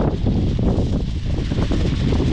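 Wind buffeting the microphone: a steady low rumble with irregular gusty thumps.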